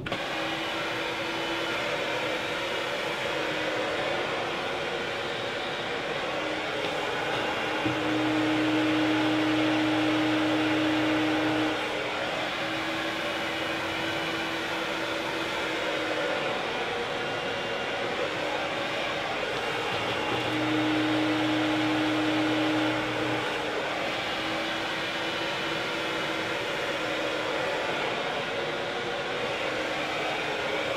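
Hand-held hair dryer running steadily, blowing onto a section of hair wound on a round brush. Twice, for a few seconds each, it gets louder with a deeper hum added.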